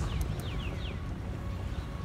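Low, steady rumble of wind and road noise on a moving moped. A quick run of short, falling chirps in the first second.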